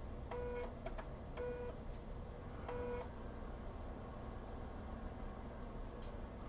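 USB 3.5-inch floppy drive's head stepper motor buzzing three times, each buzz about a third of a second long and a little over a second apart, as the drive seeks across the tracks at the start of formatting a 1.44 MB disk. A faint click sounds between the buzzes.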